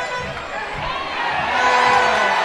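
Stadium crowd noise with distant shouting during a players' scuffle, over a steady droning tone.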